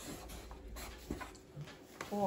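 Felt-tip marker writing on a paper pad: faint scratchy strokes, with a couple of short ticks as the tip meets the paper about a second in.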